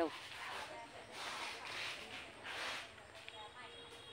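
Faint, indistinct speech under several soft rushing swells of noise, with a thin high steady tone coming in near the end.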